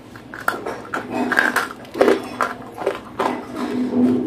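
Crunching and chewing of a dry, chalky lump of edible clay, a quick irregular run of sharp crunches that starts about half a second in.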